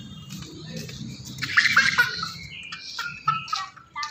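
Domestic fowl calling: a loud, high call about one and a half seconds in, followed by a few shorter calls around three seconds in.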